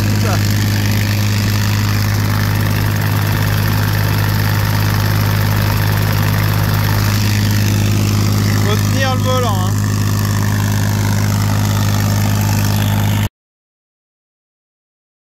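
Tractor engine running at a steady, unchanging speed, a low drone that cuts off suddenly near the end.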